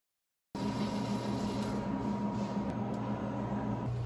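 Silence, then about half a second in a steady indoor machine hum starts abruptly, with a low drone and a faint steady high tone that stops near the end.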